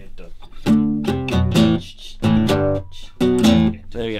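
Spanish-style acoustic guitar with a tap plate being strummed: a run of chords struck several times a second in a loose rhythm.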